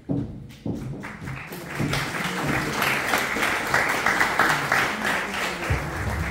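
Audience applause, a dense patter of many hands clapping that begins about a second in and builds.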